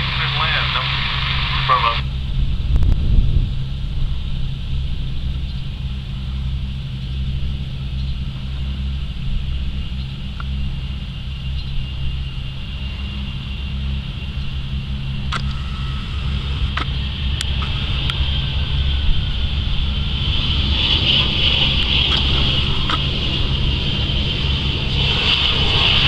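Embraer ERJ-145 regional jet's Rolls-Royce AE3007 turbofans running on the landing roll: a steady low rumble with a high engine whine that grows louder over the last several seconds as the jet passes nearer.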